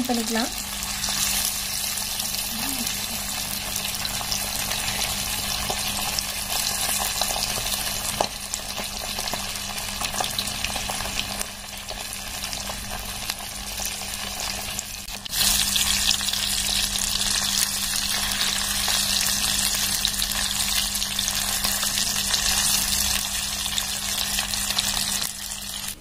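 Masala-coated fish pieces shallow-frying in hot oil in an earthenware kadai, a steady crackling sizzle. The sizzle gets louder about halfway through.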